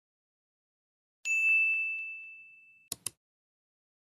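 A bright bell-like ding sound effect about a second in, ringing out and fading away over about a second and a half, then two quick sharp clicks close together.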